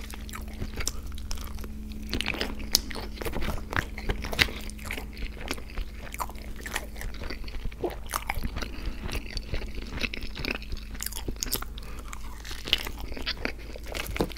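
Close-miked eating: chewing and mouth sounds of McDonald's hotcakes, with sharp clicks and scrapes of a plastic fork against the food tray, over a faint steady low hum.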